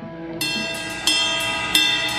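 Electric guitar during a rock band's soundcheck, in a brief gap between riffs: a ringing note fades out, then three bright, ringing notes are struck about half a second, one second and a second and three-quarters in.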